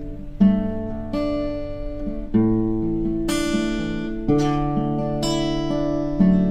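Acoustic guitar playing slow chords without singing, about six in all, roughly one a second, each struck and left to ring.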